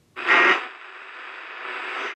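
Static from an old two-way radio: a loud burst of hiss lasting under half a second, then a quieter steady hiss with a faint high whistle that slowly grows louder.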